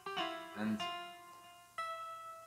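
Guitar preset in the Omnisphere software synth playing a slow line of single plucked notes from the piano roll. A new note is struck at the start, just under a second in and near the end, and each rings out and fades.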